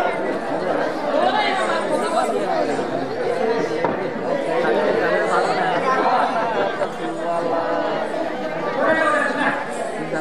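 Many people talking at once: overlapping crowd chatter at a steady level, with no one voice standing out.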